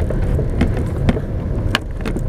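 Car interior noise while driving slowly: a steady low engine and road rumble, with three short light knocks from the cabin, about half a second in, at one second and near the end.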